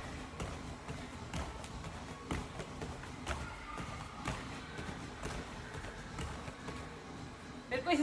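Bare feet stepping on tatami mats during a warm-up exercise: soft taps about once a second.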